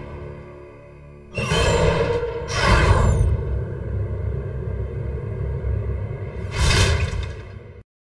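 Trailer sound design: a sudden whoosh-hit about a second in and another a second later, over a low rumbling music drone, with a last whoosh near the end before the sound cuts off.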